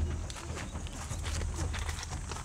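Irregular knocks and scuffs of hands and feet on rock as trainees crawl over boulders.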